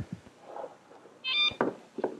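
Handheld metal detector swept over an old pine board, giving one short high-pitched electronic beep a little after a second in, followed by a light click.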